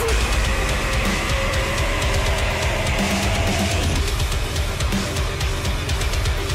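Recorded heavy metal song playing loudly: distorted guitars over a heavy low end and busy drums with rapid cymbal and snare hits.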